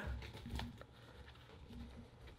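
Faint handling sounds of a Nexus 7 tablet being pressed into the holder of a leather-feel keyboard folio case: soft rustling and light taps in the first second, then nearly quiet.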